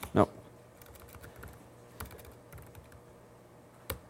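Scattered keystrokes on a computer keyboard: a few light key clicks, with sharper presses about two seconds in and just before the end.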